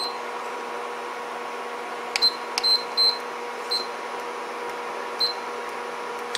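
Induction cooktop's control panel beeping: several short high beeps from about two seconds in, some with clicks, over a steady electrical hum. The hob is refusing to start, which the owner puts down to shorted rectifier diodes across its coil.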